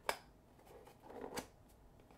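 Cardboard flip-top deck box being shut and handled: a sharp tap of the lid just after the start, a soft scrape of cardboard, then a second click about a second and a half in. The lid has no clasp and is held shut by friction alone.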